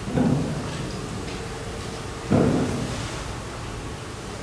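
Two dull booming thuds about two seconds apart, each dying away with a reverberant tail.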